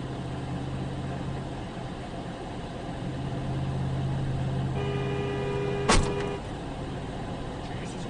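Steady drone of a vehicle driving, heard from inside the cab. About five seconds in, a car horn sounds for about a second and a half, with a sharp click partway through it.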